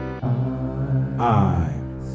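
Slow, improvised Stratocaster-style electric guitar with sustained, ringing notes. About a second in, a voice sings a long note that slides downward in pitch over the guitar.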